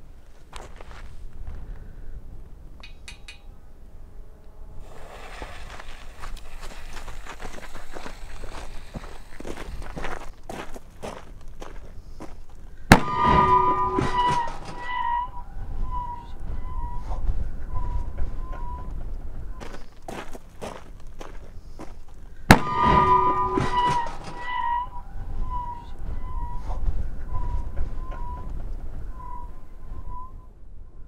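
Black-powder bowling ball cannon fired with a 2.2-ounce charge: a lit fuse hisses and crackles for several seconds, then a sharp boom about 13 s in, followed by a wavering ringing tone lasting a few seconds. A second, matching boom and ringing tone comes about 22 s in.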